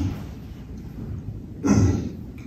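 A man clears his throat once, a short rough burst near the end, after a pause filled only by quiet room tone.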